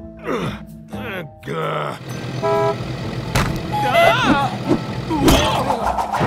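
Cartoon sound effects over background music: falling pitch glides, a short horn-like toot about midway, two sharp knocks, and a brief wavering voice-like call between them.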